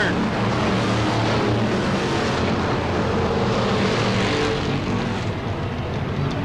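Pack of V8-powered dirt-track Sportsman stock cars running at speed around the oval: a steady, dense engine noise of several cars together, easing slightly near the end.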